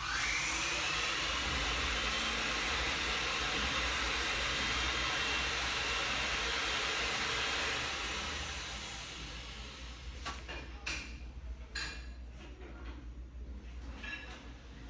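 Fluke insulation multimeter putting out its 1,000 V DC test voltage on a dry-type transformer winding: a whine that rises in pitch over about a second as the test starts and then holds, over a loud steady hiss, fading after about eight seconds. A few sharp clicks follow near the end.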